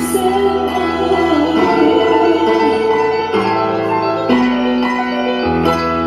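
Live Turkish ballad: an accompanying ensemble holds chords that change every second or so, and a woman sings into a microphone over them.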